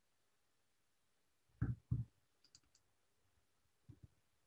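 Two low thumps about a third of a second apart near the middle, followed by a few faint high clicks and a small knock near the end, over near silence.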